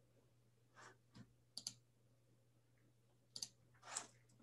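Near silence broken by a handful of faint, brief clicks from a computer mouse or keyboard as the slide is advanced, over a faint steady low hum.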